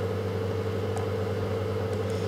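Steady low electrical hum with a fainter, higher steady tone above it, unchanging throughout.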